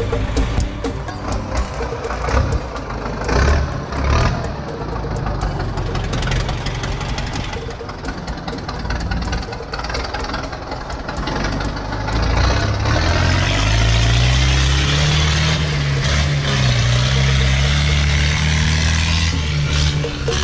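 A sugarcane loader's engine running under background music, its pitch rising and falling through the second half.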